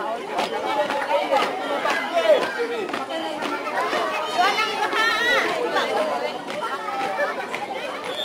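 Crowd of many people talking and calling out at once, overlapping voices with no single clear speaker.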